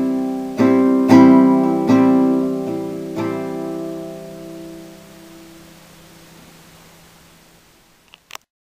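Acoustic guitar playing the song's closing chords: about half a dozen strums in the first three seconds or so, then the last chord left ringing and slowly fading away.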